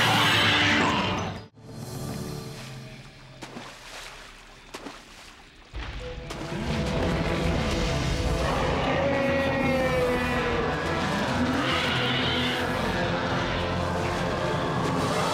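Cartoon soundtrack of music with action sound effects. A loud burst at the start cuts off about a second and a half in. A quieter passage follows, and then the music comes back loud and steady about six seconds in.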